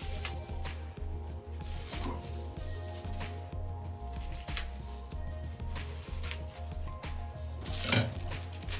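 Background music with a steady low beat and held tones, with a few sharp clicks of kitchen scissors snipping.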